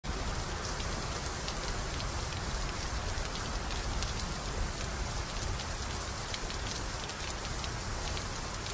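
Steady rain with a scattering of drops ticking as they fall from wet wooden eaves.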